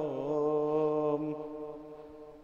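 A man's voice chanting an Arabic supplication in a melodic recitation, holding one long note that fades out about a second and a half in.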